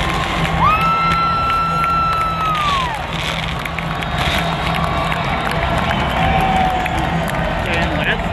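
Large stadium crowd cheering. Someone close by holds one long high note for about two seconds, and it falls away about three seconds in.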